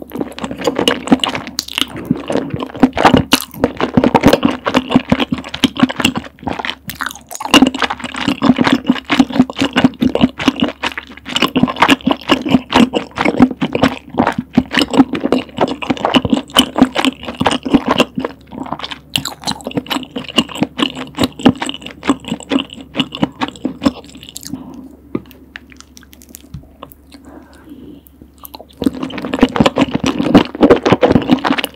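Close-miked wet chewing of rose tteokbokki, chewy rice cakes and glass noodles in a thick creamy sauce, with quick sticky mouth clicks in rapid succession. The chewing thins out for a few seconds near the end, then picks up again just before the end.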